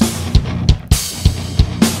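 BFD3 virtual acoustic drum kit playing a steady rock beat of kick, snare and cymbals. Its ambient mic bus is set about midway between a raw snapshot and a compressed, brightened, pumping one.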